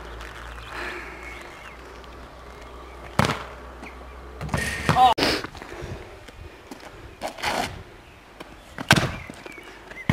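A football being kicked on a tarmac court: sharp thuds a few seconds apart, the first about three seconds in and the last near the end.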